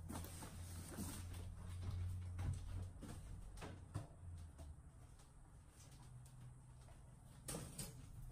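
Faint clicks, knocks and rustles of supplies being handled and set down, over a low steady hum that fades about halfway through.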